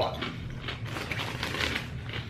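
Potato chips crunching as they are chewed: a run of irregular crisp crackles.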